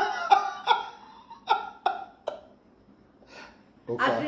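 A man laughing hard, in a string of short bursts, about six in the first two and a half seconds, then dying away.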